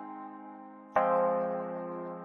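Synth chords from the AAS Player software instrument's 'Insomnia' preset playing a programmed chord progression. A held chord fades out, then the next chord is struck about a second in and rings on, slowly decaying.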